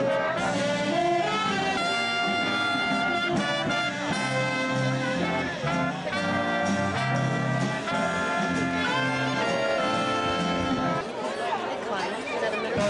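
Big band playing instrumental swing, the brass section of trumpets, trombones and saxophones carrying the melody in held chords over a steady rhythm section.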